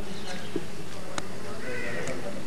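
Steady hiss with faint, indistinct voices and two sharp clicks.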